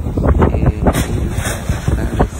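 Road rumble of a moving car heard from inside the cabin, with wind buffeting the phone's microphone in irregular low bumps. There is a short sharp crack about a second in.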